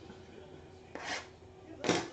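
Cardboard trading-card box being handled on a table: a brief rustling scrape about a second in, then a louder knock near the end.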